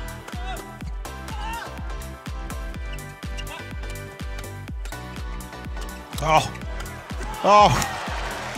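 A fast badminton rally: rackets strike the shuttle over and over, with steady music underneath. Near the end, voices exclaim twice as a player dives for a defensive save.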